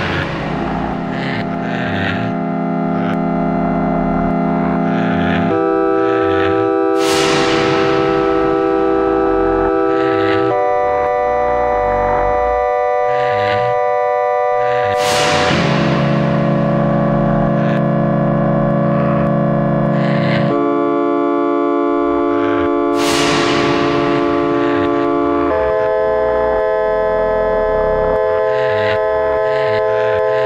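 Electroacoustic music live-coded in SuperCollider: sustained synthesized chords of held tones shift to a new chord about every five seconds over a low rumble. A deep swoosh sweeps through roughly every eight seconds.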